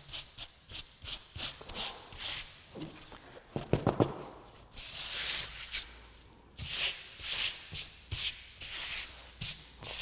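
A hand rubbing dried salt crystals off watercolour paper: a run of quick scratchy strokes, then a few longer sweeps. A short pitched sound stands out about four seconds in.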